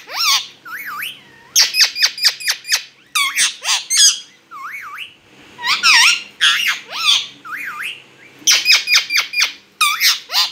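Rose-ringed parakeet calling: quick runs of short, harsh squawks, loudest about one and a half to three seconds in, around six seconds and near the end, with softer wavering, rising-and-falling whistles in between.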